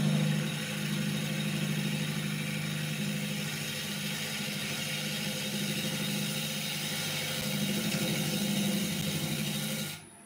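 Wood lathe running with a gouge cutting the face of a spinning wooden disc: a steady motor hum under a continuous rushing cutting noise, which stops abruptly at the very end.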